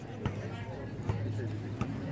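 Indistinct chatter of spectators, over a steady low hum, with three short sharp clicks.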